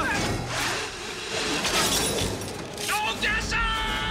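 Action-film soundtrack: dramatic music under crashing, shattering sound effects, with a long, high, held cry from a man near the end.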